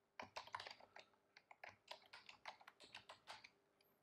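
Computer keyboard being typed on: a quick, uneven run of faint key clicks as two words are entered into a form.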